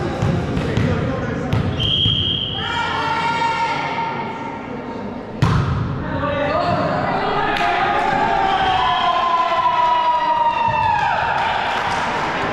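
Volleyball bouncing on a gym floor before a serve, a short referee's whistle blast about two seconds in, then one sharp smack of a hand serving the ball about five seconds in. Long drawn-out shouts from players and bench echo in the hall after the serve.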